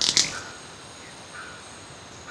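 Two sharp, loud wing snaps from a displaying male white-bearded manakin at its lek, at the very start and a fifth of a second apart, over a steady high hum of forest insects and faint repeated chirps.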